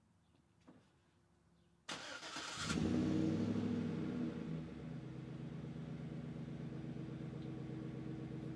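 GMC pickup truck's engine starting: near silence, then the starter cranks about two seconds in and the engine catches almost at once. It runs at a raised idle for a couple of seconds, then settles to a steady, lower idle.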